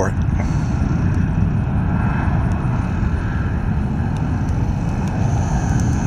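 The eight turbofan engines of a Boeing B-52H Stratofortress at takeoff power as the bomber climbs away, a steady low rumble.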